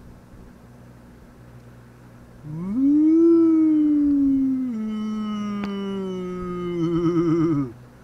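A man screaming "Aaahhh!" in fright at a huge hornet: one long cry that starts about two and a half seconds in, rises and holds, drops to a lower pitch about halfway through, and wavers before it cuts off near the end. A faint steady hum lies under the quiet start.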